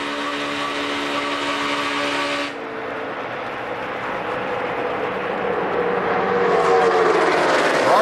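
On-board audio of a NASCAR Cup stock car's V8 engine running at a steady high pitch while drafting in the pack. About two and a half seconds in it gives way to trackside sound of the pack of stock cars passing, which swells louder near the end.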